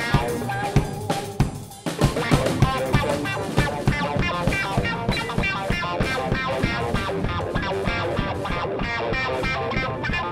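A band playing: drum kit with bass drum and snare hits under guitar. The music thins out for a moment just before two seconds in, then the full band comes back in.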